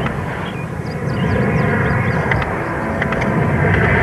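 A film sound effect for a martial-arts power move: a low, dense rushing roar that grows louder toward the end.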